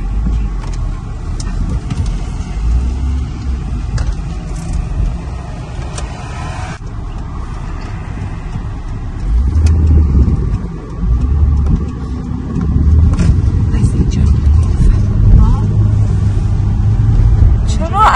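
Car cabin noise while driving: a steady low rumble of engine and road, which grows louder from about ten seconds in.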